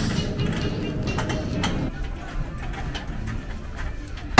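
Supermarket background: faint music and store noise, with scattered knocks and rustle from the handheld camera being moved. The low rumble drops away about two seconds in.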